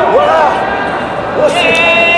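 Several voices shouting across a large sports hall. About a second and a half in, a long steady held tone begins.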